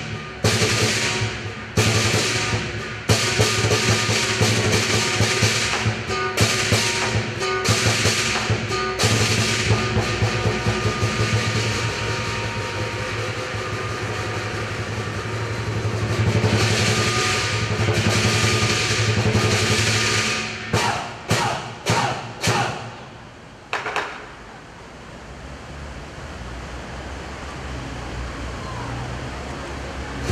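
Southern lion dance percussion band of large drum, cymbals and gong playing a fast, continuous rhythm to the lions' pole routine. The playing breaks into a few separate strikes about three quarters of the way through and then stops.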